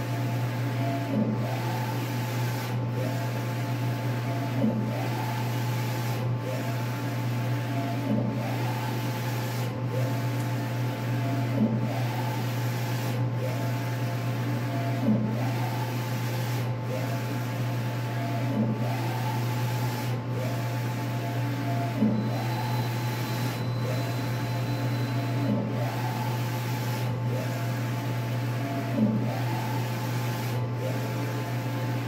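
Large-format printer with an XP600/DX11 printhead printing: the printhead carriage whirs back and forth across the bed in a steady rhythm, one sweep about every second and a half to two seconds. A louder peak comes about every three and a half seconds, over a constant low hum.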